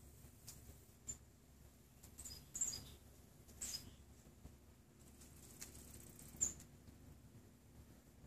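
Quiet outdoor ambience with a handful of faint, short, high-pitched bird chirps scattered through it.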